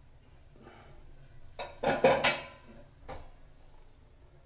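A short clatter of sharp metal knocks about two seconds in, then one lighter knock a second later: handling noise of the aluminium pot on the gas stove.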